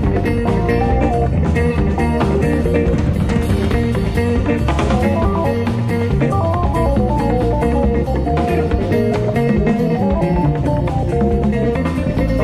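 Live jazz-fusion band playing: a guitar melody stepping up and down over drum kit and bass guitar.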